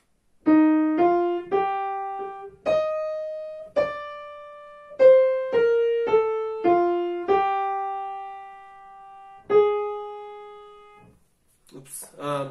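Digital piano playing a short single-line melody of about eleven notes, one at a time, the last note held and left to fade. It is a melodic dictation exercise in E-flat major, three bars in three-four time, played for a student to write down by ear.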